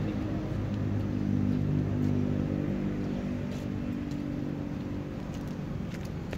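A motor vehicle's engine running steadily, a low hum that swells slightly over the first couple of seconds and then eases.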